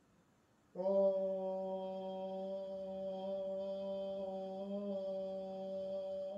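Near silence, then, a little under a second in, a chanted mantra drone starts abruptly. It is one low held note with many overtones, sustained steadily.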